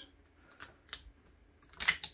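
Light clicks and crackles of cut vinyl being picked and peeled off its carrier sheet with a weeding tool: a few spaced ticks, the loudest near the end.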